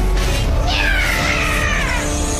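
A drawn-out, high cry that starts about two-thirds of a second in and slides steadily down in pitch, from an animated robot creature, over background music.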